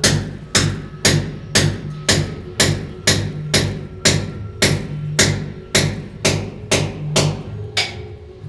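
Background music: a song with a steady, even beat of about two strikes a second over a bass line, with no singing in this stretch.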